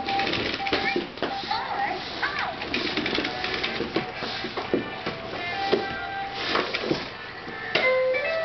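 Plastic toy push walker rolling and clattering over a wooden floor, its wheels and body clicking and knocking, while its electronic toy tune plays in short beeping notes. A baby's babbling voice rises and falls in the first few seconds.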